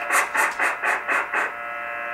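Electronic noise from a Sears Road Talker 40 CB radio on sideband: a run of about six short hissy pulses, about four a second, that stop about one and a half seconds in, then a steady hiss with a thin steady whine underneath.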